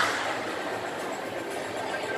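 Shopping-mall ambience: a steady wash of distant voices and hall noise, with a brief bump at the very start.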